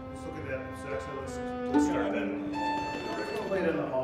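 Bowed string instruments of a string quartet playing a few held notes in rehearsal, the pitch stepping up a little after halfway.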